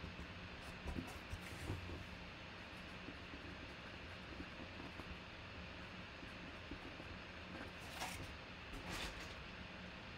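Quiet room tone: a steady low electrical hum under faint hiss, with a few soft clicks and knocks about a second in and twice more near the end.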